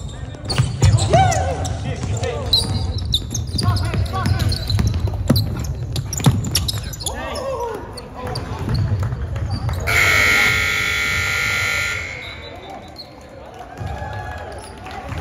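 Basketball bouncing on a gym's wooden court amid players' voices, then the scoreboard buzzer sounds, a loud steady tone lasting about two seconds, about ten seconds in. With the clock run down to zero in the fourth period, it is the final buzzer ending the game.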